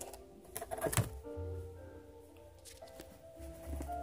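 Quiet background music of held, slowly changing notes, with a few light taps and clicks of a plastic-bagged comic book being handled in its box during the first second.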